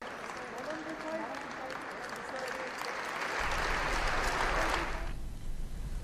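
Audience applause with a few voices underneath. The clapping swells and then stops abruptly about five seconds in.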